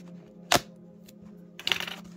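Plastic shrink wrap on a Pokémon TCG Elite Trainer Box being cut open: one sharp click about half a second in, then a brief crackly tearing near the end.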